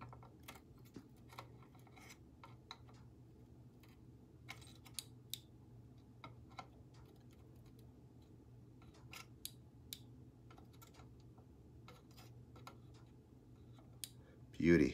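Near silence: faint scattered clicks and ticks of hand tools held against a 1/4-inch TRS plug pin while a wire is soldered on, over a low steady hum.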